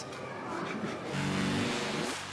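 Electronic whoosh transition sound effect leading into a glitching channel logo: a rushing noise that slowly swells, with a low hum joining about a second in.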